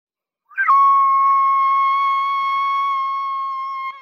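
A whistle blown in one long, steady high blast of about three and a half seconds, starting about half a second in with a brief upward slide.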